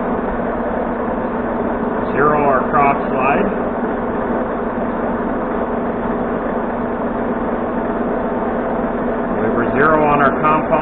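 Monarch manual lathe running its spindle at 487 rpm with the carriage feeding under power for a single-point threading pass on a fine 92-pitch thread: a steady mechanical hum with fixed low tones.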